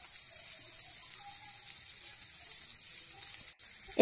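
Hot oil sizzling steadily in a frying pan as chopped onions go in, with a brief dropout near the end.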